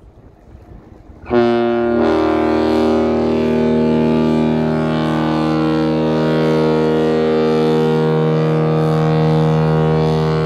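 Great Lakes freighter's air horn, the James R. Barker's, sounding one long blast made of several notes at once. It starts suddenly about a second in and is then held at a steady pitch and level.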